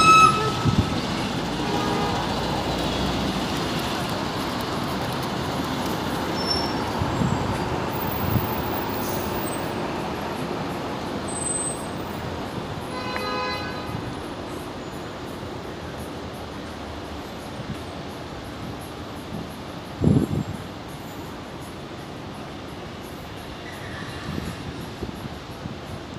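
Steady street traffic noise that slowly fades, with a short pitched toot about 13 seconds in and a brief thump about 20 seconds in.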